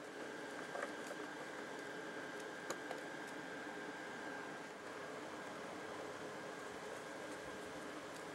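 Quiet steady room hum with a few faint clicks as a plastic propeller and its collet nut are handled and fitted onto an electric motor shaft.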